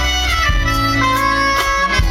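Live band music: a trumpet plays the melody, sliding between notes and then holding them, over electric bass and a few drum hits.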